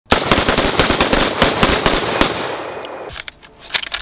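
Several M1 Garand semi-automatic rifles firing together in a rapid string, about six or seven shots a second for about two seconds, then the echo dies away. Near the end a short high metallic ping sounds, typical of an emptied en-bloc clip being ejected, followed by a few faint clicks.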